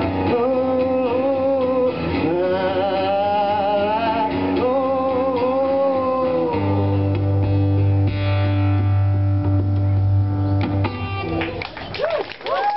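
A man singing to his own acoustic guitar accompaniment. About six and a half seconds in, the voice stops and the guitar plays on alone, its chords ringing out and thinning near the end.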